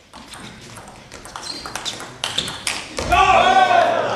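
Table tennis rally: the celluloid ball clicks rapidly off the bats and table, the hits growing louder. It ends in a loud shout as the point is won.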